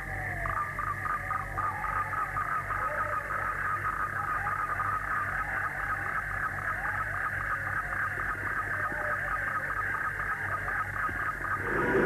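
Night-time chorus of frogs and insects: a steady pulsing chirr, about six pulses a second, with scattered short calls, over a faint low hum.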